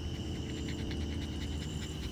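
Background insect chirping: a steady high-pitched trill made of fast, even pulses, over a low hum.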